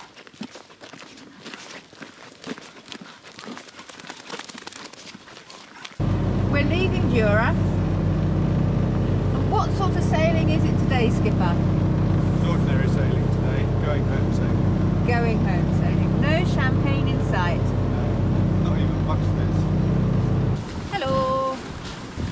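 Footsteps on a gravel path for about six seconds. Then a yacht's inboard engine runs steadily with a low, even hum, under voices or calls, and cuts off a little before the end.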